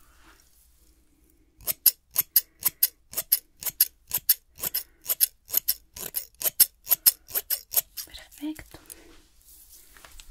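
Hair-cutting scissors snipping through hair in a quick, even run of about two dozen cuts, roughly four a second. The cuts start about one and a half seconds in and stop near eight seconds.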